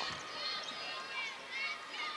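Basketball arena ambience: a crowd murmuring, with sneakers squeaking briefly on the hardwood court as players run the floor.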